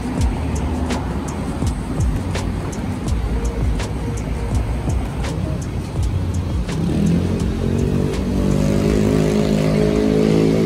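Footsteps on pavement at walking pace over a steady rumble of street traffic. About seven seconds in, sustained music tones come in and grow louder.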